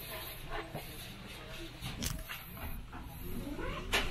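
Steady low hum inside a train car standing at a station, with a few sharp clicks, the loudest right at the end, and a short wavering pitched sound just before it.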